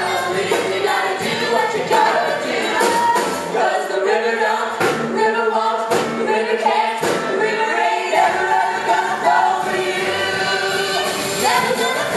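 Cast ensemble of mixed voices singing a musical-theatre number together, with three sharp hits around the middle, about a second apart.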